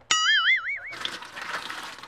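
A springy cartoon 'boing' sound effect with a wobbling pitch, lasting just under a second. It is followed by tap water running from a faucet into a stainless steel basin, a steady splashing hiss.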